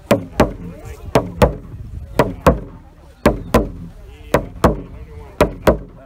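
Rawhide frame drum struck with a padded beater in pairs of deep beats, one pair about every second, a heartbeat rhythm.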